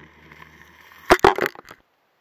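Submerged probe camera rig picking up a faint low hum, then a quick run of four or five sharp knocks on its housing or pole about a second in, after which the sound cuts off.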